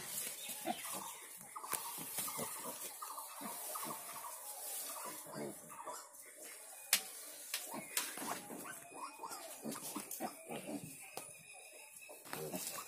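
Piglets calling in quick runs of short, repeated cries, with a few sharp knocks in between.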